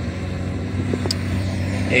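Engine of a ride-on work machine running steadily, a constant low drone with a few level tones, with a faint click about a second in.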